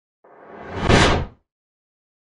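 A whoosh sound effect that builds for about a second to a loud peak, then stops quickly.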